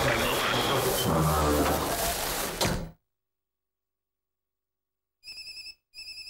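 A loud, dense rush of noise for the first three seconds that cuts off abruptly. After a silence, near the end, a phone rings electronically in two short trilling bursts of about half a second each.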